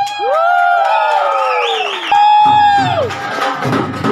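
The drumming breaks off and several voices let out long whooping shouts that swell and slide down in pitch, with a second held shout starting about halfway through and falling away. The drumming picks up again near the end.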